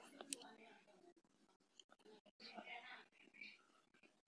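Near silence: room tone with a faint click just after the start and a faint whispered murmur a little past the middle.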